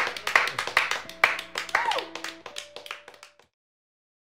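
A small group clapping in a small room, mixed with a voice and short vocal cries. The sound cuts off suddenly about three and a half seconds in.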